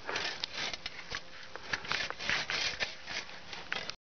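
Small hand saw rasping through the thin trunk of a pine sapling in short, uneven strokes, with scattered sharp clicks.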